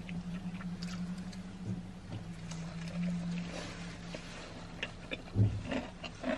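Close-up chewing of fried chicken sandwiches, with faint soft crunches and mouth clicks scattered through, over a steady low hum. A short, louder low sound comes near the end.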